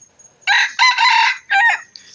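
A red junglefowl (wild chicken) rooster crowing once: a short crow of just over a second, broken into three parts.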